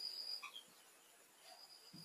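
Very quiet room tone with a faint, steady high-pitched whine; the marker strokes are barely audible, if at all.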